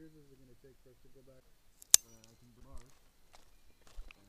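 Faint wordless humming or murmuring from a man's voice, broken about two seconds in by a single sharp click with a brief metallic ring after it.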